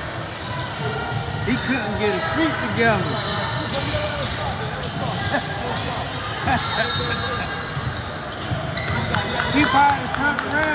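A basketball being dribbled and sneakers squeaking in short sharp chirps on a hardwood gym floor during a game, with voices calling out in the background.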